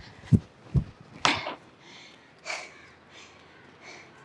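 A runner's breathing: a few short, noisy exhales, the clearest about a second in and midway. Three low thumps come in the first second.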